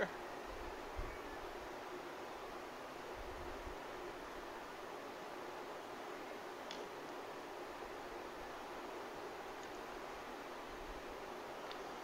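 Steady background hiss with faint handling of small wire terminals and crimper parts, and a couple of light ticks.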